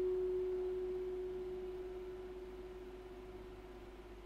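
A single note on a Stratocaster-style electric guitar, played through an amp, ringing out after being plucked and slowly fading as it sustains.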